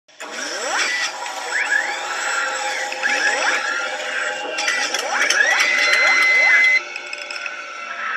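Electronic intro music and sound effects: several quick rising sweeps, one every second or two, then a held high tone that cuts off suddenly near the seventh second.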